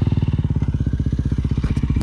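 2019 Beta 300RR Race Edition's two-stroke single-cylinder engine idling close by, with a steady, rapid beat.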